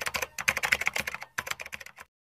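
Keyboard typing sound effect: a quick run of key clicks with a short break a little past the middle, accompanying text that types itself onto the screen.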